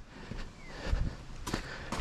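A few faint footsteps and handling sounds, with light clicks, the sharpest two near the end.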